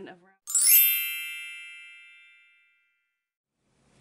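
A bright chime sound effect marking a cut in the video: one ding about half a second in that rings out and fades over about two seconds.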